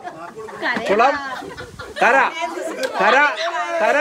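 Group chatter: several high-pitched voices of children and women calling out over one another, with no single clear speaker.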